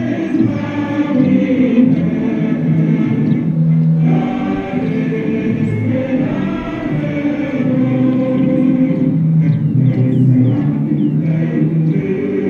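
A group of voices singing together in a choir, a slow melody in long held notes.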